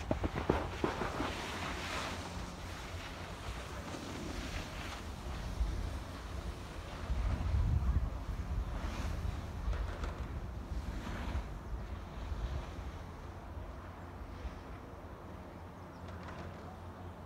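Wind buffeting the microphone: a steady low rumble that swells into a stronger gust about halfway through, with faint hissing now and then.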